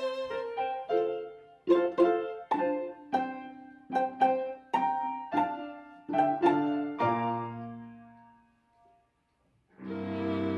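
Piano playing a run of struck chords, about two a second, each fading after it is struck; the last chord rings out and dies away, leaving a second or so of silence near the end.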